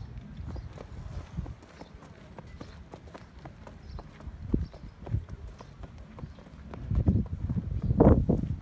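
Hooves of a Thoroughbred horse at a walk: a run of clip-clop footfalls on a rubber mat and gravel path, getting louder near the end.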